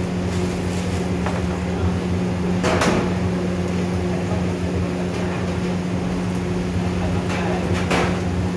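Steady mechanical hum with a low droning tone over a faint hiss, from equipment at a griddle food stall. A sharp clatter comes about three seconds in, and a few lighter knocks near the end.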